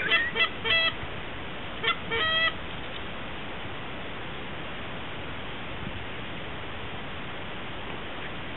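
Geese honking: a quick run of about five short honks, then two more about two seconds in, followed by steady faint noise.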